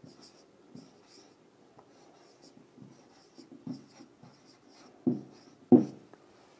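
Faint marker pen strokes on a whiteboard as words are written, in short scratchy bursts. Two brief, louder low sounds come near the end.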